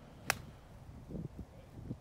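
An 8-iron striking a golf ball on a full swing: one sharp, crisp crack about a third of a second in.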